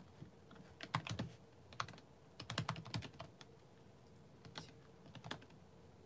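Typing on a computer keyboard: irregular bursts of key clicks, the busiest flurry around the middle, with a few scattered keystrokes toward the end.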